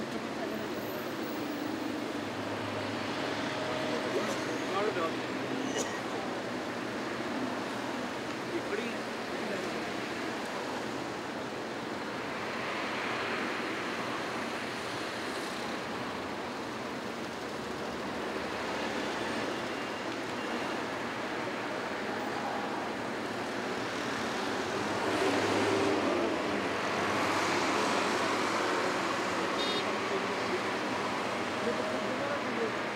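Dense, slow-moving road traffic: a steady mix of many car engines and tyres, swelling louder about midway and again near the end.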